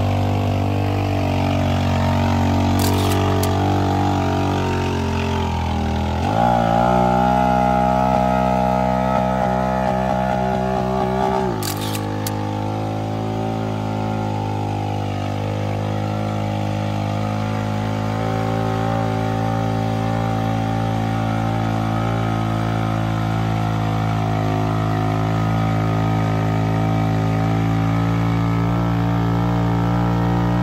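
Engine of a mud-modified Honda Fourtrax ATV running under load as it pulls through deep mud. About six seconds in it revs up, holds higher for about five seconds, then drops back to a steady lower pitch for the rest of the time.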